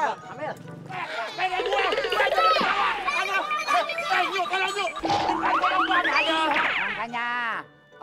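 Cartoon-style comic sound effects laid over background music: springy boings and sliding pitch glides throughout, with a sharp hit about five seconds in followed by rising sweeps.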